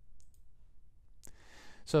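A single sharp computer mouse click about a second in, followed by a short breath in just before speech.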